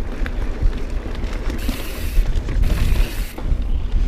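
YT Jeffsy mountain bike rolling down a dirt singletrack, heard from a GoPro on the bike: wind rumble on the microphone with small rattles and clicks from the bike and tyres, and two short bursts of hiss around the middle.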